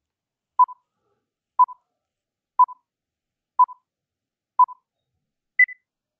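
Countdown timer beeps: five short beeps of one pitch, one each second, then a single higher beep marking the end of the countdown.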